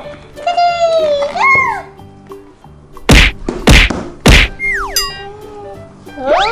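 Edited-in cartoon sound effects: three loud whacks about half a second apart, then a quick falling slide-whistle glide, with a wavering whistle-like tone about a second in. Light background music runs underneath.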